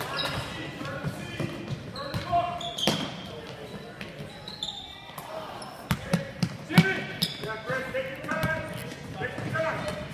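Basketball dribbled on a hardwood gym floor, with a cluster of bounces about six to seven seconds in, amid voices calling out in the large, echoing gym.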